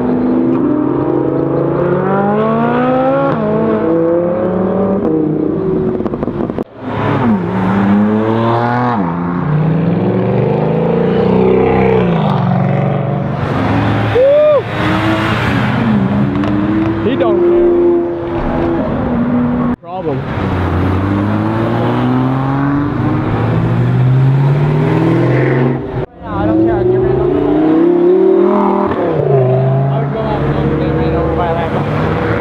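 Sports cars accelerating hard one after another as they pull away, engines revving up through the gears with the pitch climbing and dropping at each shift.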